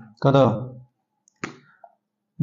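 A man's voice says one short word, then a single sharp click about a second and a half in, with a fainter tick just before the end.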